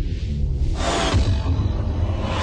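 Sound-effect music sting for an animated title graphic: a deep, steady bass rumble with a rushing whoosh that swells about a second in.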